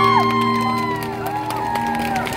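A live band's final held chord ringing out and fading about halfway through, while the audience cheers and whoops with scattered claps.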